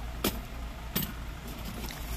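Mouth sounds of someone eating soft marang fruit: two short smacks about three-quarters of a second apart, over a low steady background hum.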